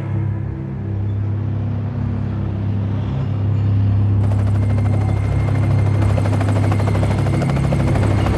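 A low steady drone, joined about four seconds in by the rapid, even chop of a helicopter's rotor.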